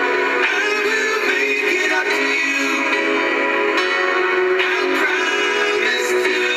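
A pop song with a lead vocal playing from a car's FM radio, steady and with little bass.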